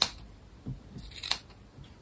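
Small scissors snipping: two sharp snips about a second and a quarter apart, the first the louder, with a fainter click between them.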